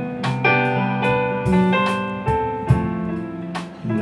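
Live blues band in a slow groove between sung lines: a keyboard plays a fill of held, ringing chords struck several times, over electric bass and guitar.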